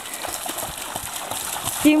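A Pharaoh hound running through shallow water, its legs splashing in a quick, irregular patter. A woman's voice starts near the end.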